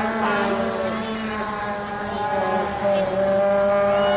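Motorcycle engines running as they ride along the road, their pitch drifting slowly, louder near the end.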